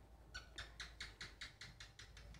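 A faint, rapid series of about ten short, high chirps, roughly six a second, starting about a third of a second in and lasting about a second and a half.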